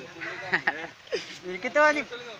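Voices speaking, with a loud, short, high-pitched call near the end.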